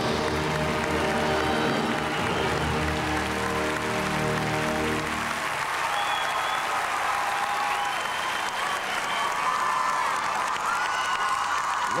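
Orchestral program music holding a long final chord, giving way about five seconds in to arena applause and cheering as a figure-skating program ends, with some music still sounding over the clapping.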